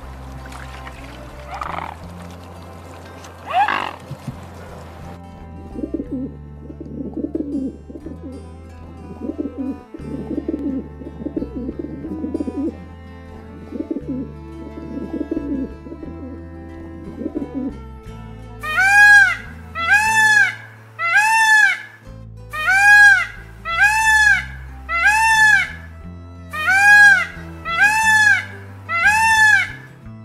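Over a steady music bed, a dove coos in repeated low phrases. About two-thirds of the way in, a peacock starts a loud series of ringing, arched honking calls, about sixteen in quick groups of two or three, the loudest sound here. A couple of brief high calls come near the start.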